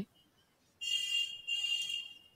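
High-pitched electronic alarm tone, one steady pitch, starting a little under a second in and lasting about a second and a half.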